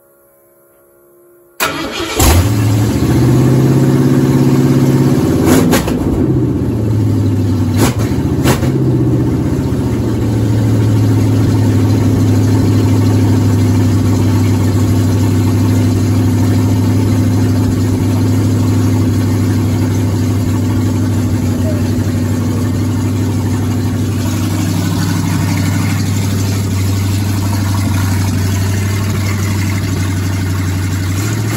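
Ford 351 Windsor V8 breathing through open shorty headers with no exhaust pipes, started cold for the first time. It catches suddenly about a second and a half in and runs fast and loud, with a few sharp cracks in the first several seconds, then settles into a steady, loud idle.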